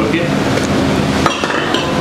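Metal ice cream scoop clinking and knocking as Turkish ice cream is scooped and handed over on a cone, with one sharper knock a little past halfway.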